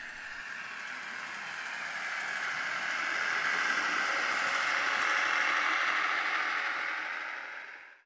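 A passing train: a rushing noise that swells to its loudest about five seconds in, then fades and cuts off abruptly at the end.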